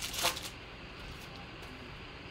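Foil wrapper of a Donruss Optic basketball card pack crinkling as it is peeled open, in a short burst in the first half second.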